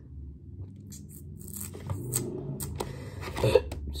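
Soft handling noises from chocolate-covered strawberries being touched and picked up off a plate: a scattered run of small clicks and ticks. A short gasp comes at the very end.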